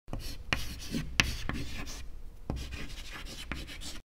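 A pen writing on paper: scratchy strokes with a few sharper taps of the tip.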